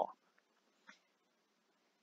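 Near silence, room tone only: a spoken word ends right at the start, and a faint short tick comes about a second in.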